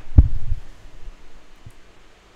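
Handling noise on a handheld microphone being moved: two low thumps a fraction of a second apart near the start, and a faint bump near the end, over a quiet room hum.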